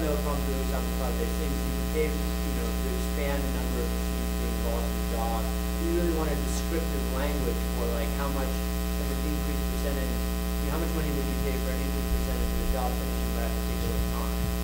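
Steady electrical mains hum with a buzzing comb of overtones, with a faint, distant voice talking underneath it.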